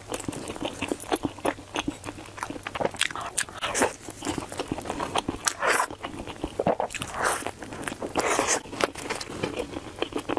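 Close-miked chewing and crunching of crispy breaded fried food: a dense, irregular stream of crackles and crunches with no pauses.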